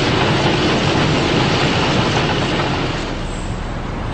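A tank driving past close by, its steel tracks clattering steadily over the engine's noise, easing off a little near the end.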